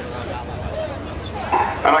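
Indistinct background voices over a low steady rumble, then a public-address commentator's amplified voice starting loudly near the end.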